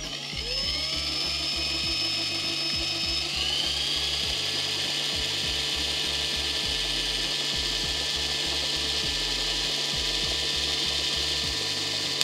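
Cordless drill running steadily, turning the pencil pulley and rubber belt of a homemade Van de Graaff generator. Its whine rises as it speeds up near the start and again about three seconds in, then holds steady.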